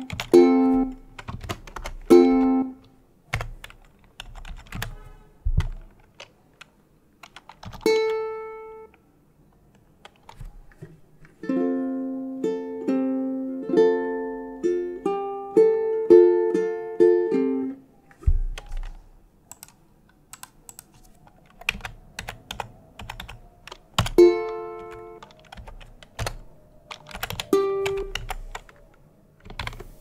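Computer keyboard keys clicking as notes are typed into the tab, between short plucked ukulele notes and chords. A longer phrase of ukulele notes plays about halfway through.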